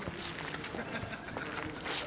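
Faint background voices of people outdoors, with a few light clicks or knocks, likely footsteps on the gravel court.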